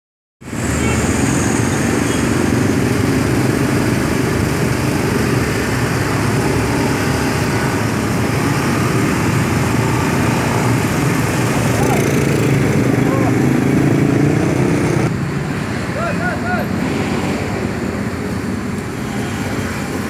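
Motor scooters passing slowly one after another, their small engines running, in steady street traffic noise that eases slightly about three quarters of the way through.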